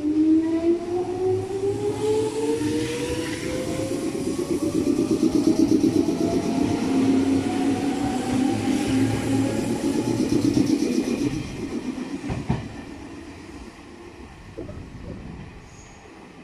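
Red Meitetsu electric commuter train pulling out of a station, its traction motors whining steadily upward in pitch as it gathers speed over the first ten seconds or so, over the rumble of the wheels on the rails. There is a single knock about twelve seconds in, and then the sound fades as the train draws away.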